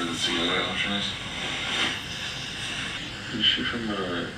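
A man mumbling in his sleep, an overnight recording from a sleep-tracking app played back through a phone speaker, with a steady hiss under the indistinct words.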